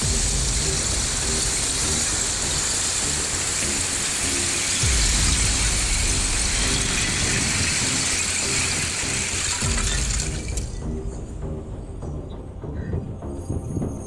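Shore ice breaking into needle-like shards and piling up onto the beach, a continuous glassy tinkling hiss over background music. The ice sound stops about ten seconds in, leaving the music.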